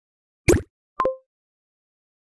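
Two short cartoon sound effects for an animated title card: a quick pop about half a second in, then a plop with a brief ringing tone about a second in.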